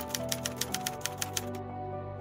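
A typewriter sound effect: a quick run of key strikes, about seven a second, that stops about one and a half seconds in. Background music with held notes plays underneath.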